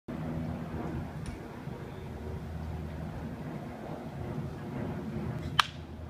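Wooden baseball bat hitting a pitched ball: a single sharp crack near the end, over faint background noise.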